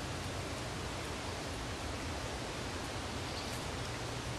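A steady hiss of outdoor background noise, with faint scratching of a small dog digging in loose garden soil with its front paws.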